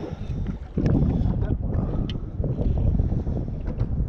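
Wind buffeting the microphone on an open boat, with water lapping against the aluminum hull and a few light clicks.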